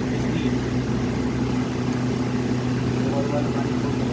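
A steady low machine hum on one even pitch with an overtone above it, with no change in level.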